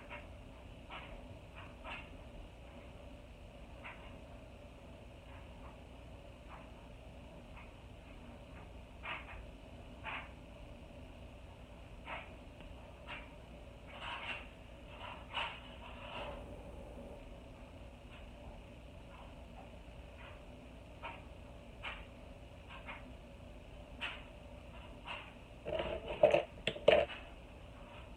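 Quiet room tone with faint, scattered small clicks and light taps of makeup tools being handled close to the face, and a brief cluster of louder knocks near the end.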